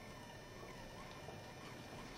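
Quiet room tone of a large hall with a faint steady hiss, and no distinct sound.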